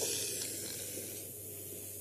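Steady background hiss of the recording with a low, steady hum underneath, fading slightly during the first second.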